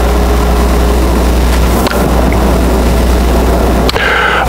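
Steady low hum with an even hiss and no speech: lecture-hall room and microphone noise, with a couple of faint ticks.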